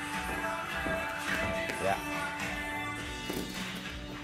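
Background music with sustained tones.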